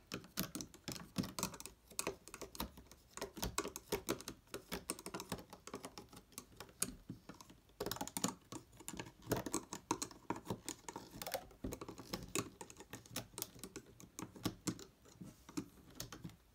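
Irregular light clicks and taps of a plastic Rainbow Loom hook against the loom's plastic pegs as rubber-band loops are lifted off the loom.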